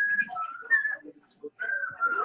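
Someone whistling a tune: held high notes that step up and down in pitch, with a short pause just past the middle.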